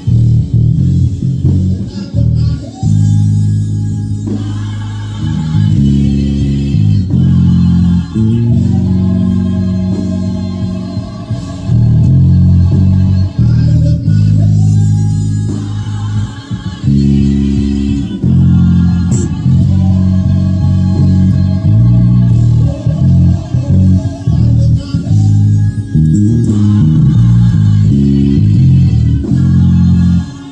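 Electric bass guitar played fingerstyle: a deep, moving bass line carrying an old-school gospel medley, with the band and singing above it.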